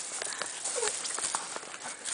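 Dogs' claws clicking and tapping on a brick patio as a boxer and a miniature dachshund move about and jump up, with a short dog whine a little under a second in.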